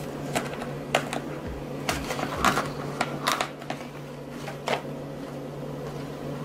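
Paper dollar bills and a clear plastic zip envelope in a ring binder being handled: scattered short crinkles and clicks, about a dozen, irregularly spaced.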